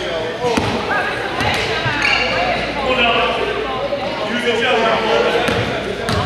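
Indistinct voices of players and spectators echoing in a gym, with a basketball bouncing now and then on the hardwood court.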